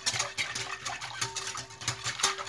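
Wire whisk rattling and clicking against a glass bowl while beating a runny egg-and-yogurt mixture.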